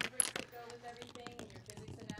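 Glass marbles rolling and clicking along a red plastic marble-run track of a Rube Goldberg machine, with a string of sharp clicks, the loudest just after the start.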